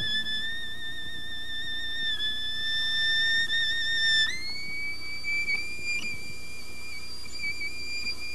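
Solo violin holding a very high, sustained note with vibrato, then moving up to a still higher held note about four seconds in, with no other instruments playing.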